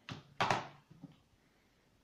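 Handling noise of a lump of mortar being put down and a stone picked up from among objects on the floor: two short scuffing knocks close together near the start, the second louder, then a faint tick about a second in.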